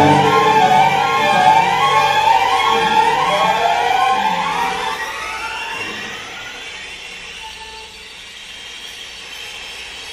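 String orchestra playing many overlapping sliding pitches on bowed strings, rising and falling against one another; the slides thin out and the sound fades to a quiet hush by about two-thirds of the way through.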